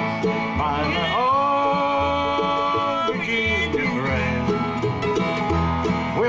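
Bluegrass band playing live: upright bass fiddle keeping a steady beat under guitar, mandolin and banjo, with a long held note starting about a second in.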